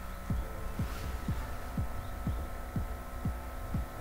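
Background music with a soft, steady low beat, about two thumps a second, over a faint steady hum.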